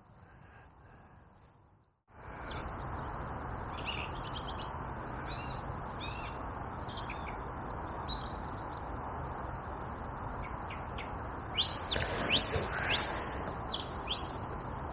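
Small birds chirping and calling over a steady background noise, with a short run of louder, sharp rising calls about twelve seconds in. The first two seconds are almost silent.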